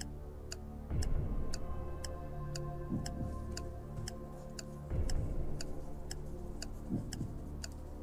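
Quiz-show countdown clock sound effect: a steady tick about twice a second over a background music bed with a low pulse every two seconds.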